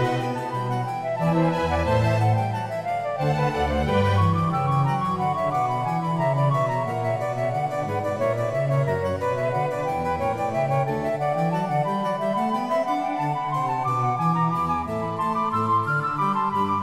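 Background keyboard music in a baroque style, a harpsichord playing quick, busy lines over a moving bass.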